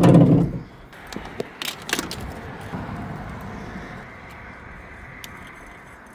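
A few sharp clicks and clacks of jump-starter cable clamps being handled and clipped onto a truck battery terminal, the loudest about two seconds in, over a steady background hum.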